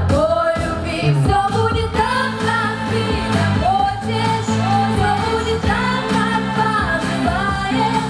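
Female vocal group singing into microphones, their voices moving in melodic lines over an instrumental backing with a steady bass line.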